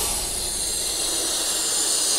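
Steady, loud rushing hiss with a low rumble underneath: a jet-like whoosh sound effect in the channel's outro sting.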